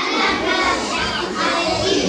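A crowd of young children's voices overlapping at once, chattering and calling out.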